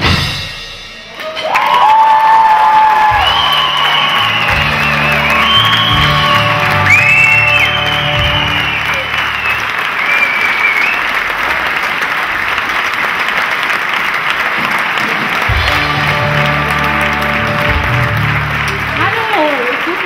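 Audience applauding and cheering, starting about a second in, after a drum piece stops, with music and its bass notes playing underneath.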